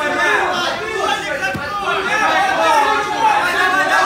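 Several people talking at once: indistinct, overlapping chatter.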